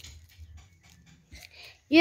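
Faint rustling and crinkling of paper being handled and shaped by hand, in soft short bursts.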